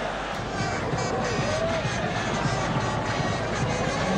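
Football stadium crowd noise: a steady din of the crowd with faint singing or chanting voices rising and falling in it.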